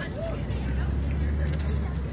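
A low, steady engine hum sets in about a quarter second in and carries on, like a motor vehicle running close by, with faint voices and light clicks over it.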